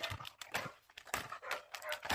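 A dog panting with quick, noisy breaths, several a second.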